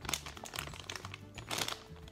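Clear plastic bag crinkling and crackling in irregular bursts as a bagged foam squishy toy is handled, over quiet background music.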